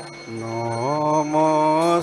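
A man's voice chanting a devotional prayer in long, drawn-out notes. He begins low a moment in and glides up to a higher held note about a second in.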